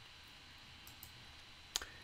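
Clicks over faint room hiss: a few faint ones about a second in, then one sharper single click near the end.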